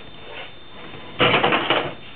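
Small hard toys clattering and rattling together in a toy box: one dense jumble of rapid knocks lasting under a second, about a second in.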